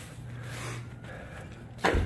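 A faint, steady low hum, with one sharp knock near the end.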